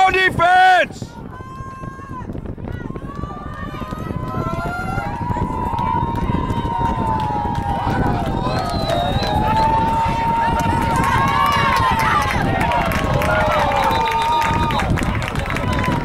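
Football spectators in the stands yelling and cheering through a play, many voices overlapping and rising and falling. A loud, close shout comes right at the start.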